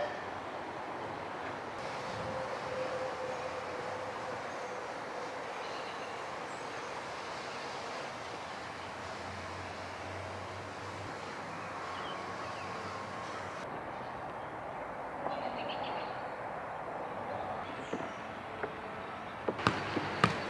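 Steady outdoor background noise, an even rushing hiss with no distinct events. Near the end come a couple of sharp knocks as a football is kicked.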